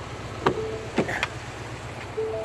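Exterior door handle of a Ford F-250 Super Duty pulled and the driver's door unlatched and opened: two sharp latch clicks about half a second apart, over a steady low rumble.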